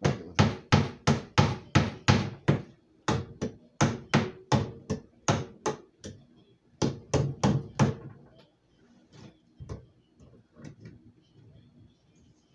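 Claw hammer striking a bolt to drive it through a wooden gig handle, sharp knocks about three a second in three runs, the handle resting on a wooden dresser. A few lighter taps follow near the end.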